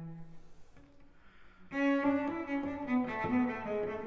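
Solo cello: the low closing note of the fugue dies away, followed by a short pause. Just under two seconds in, the Allegro starts with quick running notes.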